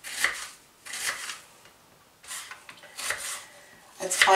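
Kitchen knife slicing through an onion into half rings on a cutting board: four separate cuts, each a short crunch.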